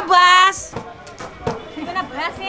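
A woman's short held vocal cry, an 'ooh' lasting about half a second, then quieter crowd murmur with a few light knocks.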